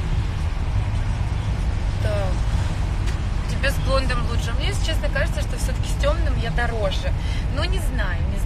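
Steady low road rumble inside a moving car's cabin, with a voice talking over it from about two seconds in.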